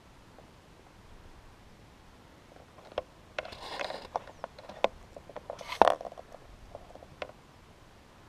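Handling noise on a GoPro: a cluster of clicks, scrapes and rustles from about three to six seconds in, loudest just before six seconds, with one last click a second later.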